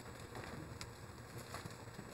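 Faint rustling of thin Bible pages being turned by hand, with a few soft ticks of paper, over quiet room hiss.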